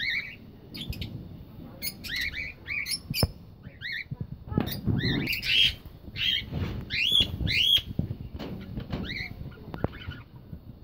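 Small parrots in an aviary, cockatiels among them, calling with many short, arched chirps and squawks that overlap one another. Several bursts of low muffled noise and a single sharp click sound among the calls.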